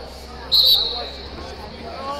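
A short, loud, shrill whistle blast about half a second in, typical of a wrestling referee's whistle, over the steady chatter of an arena crowd.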